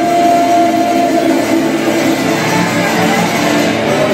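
Live band playing a song, with electric guitar, saxophones, congas and drum kit.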